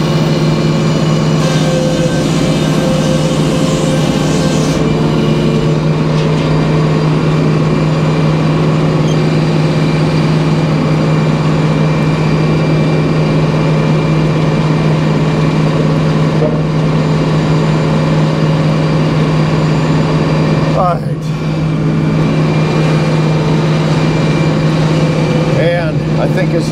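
Circular sawmill running with no log in the cut: a steady, loud machine hum from the head saw and its drive at running speed, with one brief dip about three-quarters of the way through.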